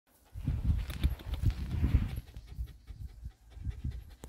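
Dog panting quickly, about four or five breaths a second, loudest in the first two seconds and then quieter.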